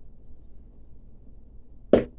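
Quiet room hum, then one sharp, loud crack near the end as a screwdriver is stabbed into the bottom of an upturned cup of paint.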